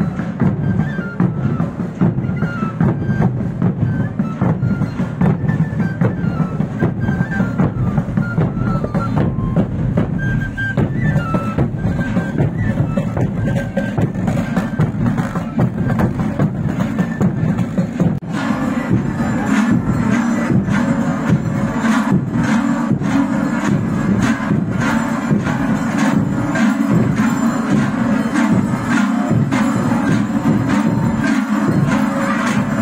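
A marching drum band of large bass drums (bombos) and drums beating a steady rhythm, with short high melody notes above the drumming. About 18 s in, the sound changes abruptly to a fuller, denser music.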